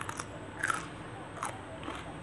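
A person chewing a mouthful of sticky rice and raw leafy vegetables close to the microphone. There are about five short, crisp crunches, the loudest just under a second in.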